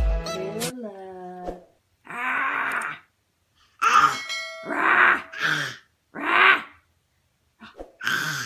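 A baby making short breathy huffs and grunts, about five bursts spread over several seconds. Background music ends in the first second, and a brief ringing tone sounds partway through.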